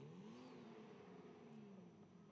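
Faint drift-car engine revving once, its pitch rising quickly and then sinking slowly away.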